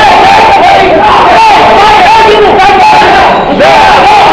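Ringside crowd at a kickboxing bout shouting at the fighters, many men yelling at once, very loud and overlapping.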